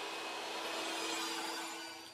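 Jobsite table saw's motor and blade running with a steady whir and a faint hum, fading away towards the end.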